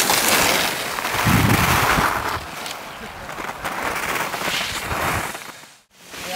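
Skis carving on packed snow: a rasping scrape of the edges that swells in two long turns, then fades out near the end.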